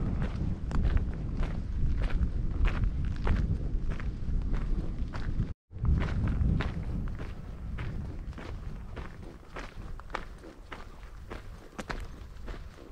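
A hiker's footsteps at a steady walking pace, about two steps a second, crunching on a gravel track after a short break in the sound about halfway through. Wind rumbles on the microphone throughout.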